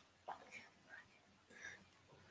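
Near silence, with a few faint, brief whispered sounds from a person.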